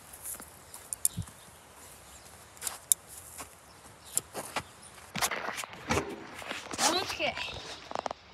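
Footsteps on dry, hard ground, with a few sharp clicks in the first three seconds. Faint, indistinct voices come in during the second half.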